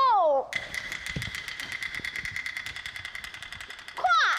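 A woman's sung phrase ends about half a second in. Then a fast, even roll of percussion strokes, about ten a second, runs over a steady ringing tone: the opera accompaniment's percussion.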